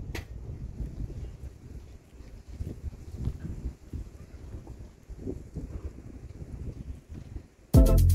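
Wind buffeting the microphone: a low, uneven rumble. Loud electronic music cuts in suddenly near the end.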